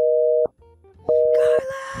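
Telephone busy signal over the call-in phone line: a two-tone beep about half a second long, repeating about once a second, heard twice. It means the caller's call has dropped.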